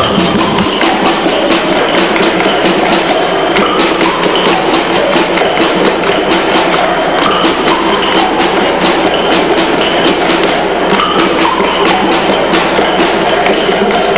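A group of children clapping a rhythm together as an ensemble piece, a steady run of sharp claps over the hum of a crowd.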